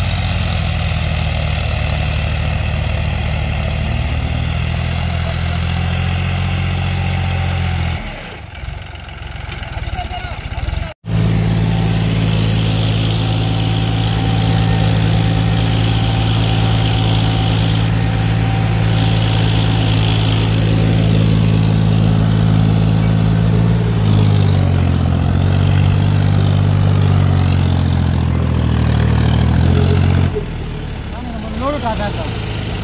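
Diesel tractor engines running under load, pulling cultivators through soil, with a steady low engine note. About eight seconds in the sound drops away for a few seconds and cuts out briefly, then the engine returns. Around twenty-four seconds in, the engine pitch dips and recovers.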